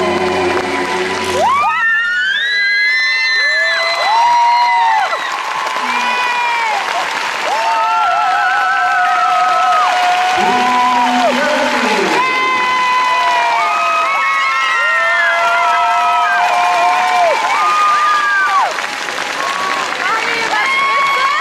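Synchronized skating program music played in an ice arena: a melody of long held notes that slide into one another, changing character about a second and a half in, with the crowd cheering underneath.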